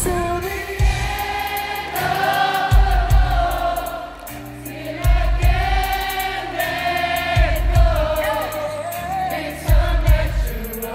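Live R&B ballad: band backing with a heavy bass note about every two and a half seconds under many voices singing together in a choir-like blend, the arena audience singing along.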